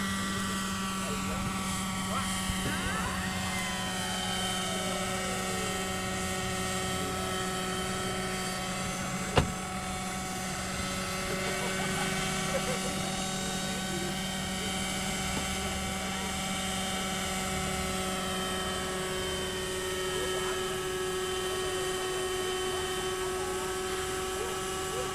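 Radio-controlled model helicopter's glow-fuel engine and rotors running steadily in flight, the pitch shifting a little as it manoeuvres. A single sharp click about nine seconds in.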